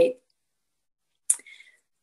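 The end of a woman's spoken word, then silence broken a little past a second in by a single short, sharp click with a faint brief sound just after it.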